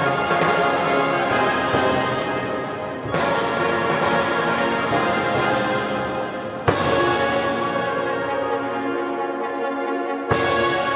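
Concert wind band of brass and woodwinds (clarinets, bassoon, trumpets, tuba) playing full sustained chords, with a sharp accented chord about two-thirds of the way through.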